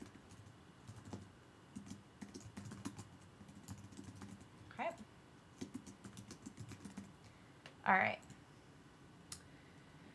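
Typing on a computer keyboard: a steady run of faint, quick keystrokes.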